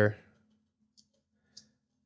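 Two faint, short clicks about half a second apart against near silence, after a voice trails off.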